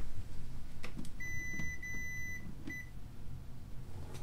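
Room air conditioner unit beeping in answer to its remote: two beeps a little over a second in, the second longer, then a short third beep, with a few faint knocks of movement.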